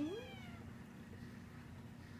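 A cat's single short meow at the very start, rising and then falling in pitch, followed by a faint steady low hum.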